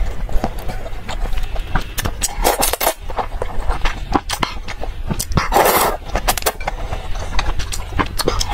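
Close-miked eating of noodles in chili broth: wet mouth clicks and chewing, with two longer slurps about two and a half and five and a half seconds in.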